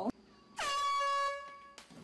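A single steady, horn-like tone lasting about a second, starting about half a second in with a quick drop into pitch.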